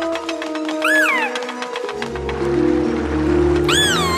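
Cartoon background music with two short, high, squeaky creature-voice calls that rise and fall in pitch, one about a second in and one near the end.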